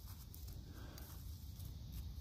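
Quiet pause with only a faint, steady low rumble of background noise and no distinct sound events.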